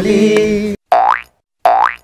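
A held sung note cuts off abruptly under a second in. Two short cartoon 'boing' sound effects follow, each a quick rising glide, about three-quarters of a second apart.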